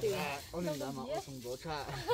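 Speech: a voice talking quietly, with a little breathy hiss.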